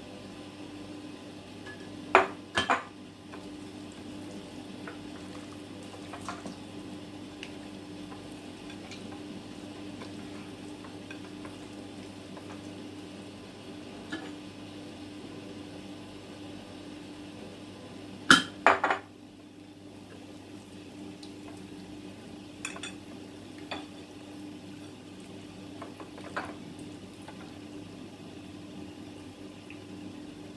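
A plate clinking now and then on the counter as a whole raw chicken on it is handled and rubbed with oil. Two quick pairs of sharp clinks stand out, one a couple of seconds in and one a little past the middle, with a few fainter taps, over a steady low hum.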